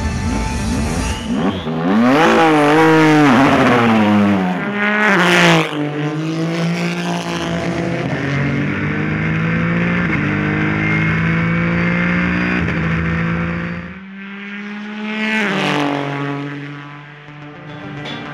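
Ford GT race car's twin-turbo V6 at speed on a track: the engine note climbs, then drops as the car passes close by, holds steady at high revs, and rises and falls again in a second pass near the end.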